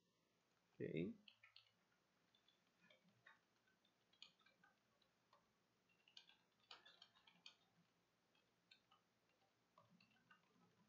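Faint, irregular keystrokes on a computer keyboard as a line of text is typed, after a short hum of a man's voice about a second in.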